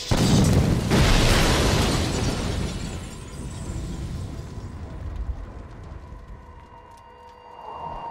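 Cartoon explosion sound effect: two loud blasts about a second apart, followed by a long rumbling decay that fades away over several seconds.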